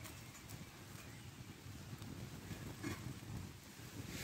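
Twig-fuelled wood fire in a small flat-pack stove burning under a pan: a faint low rush of flames with a few light crackles.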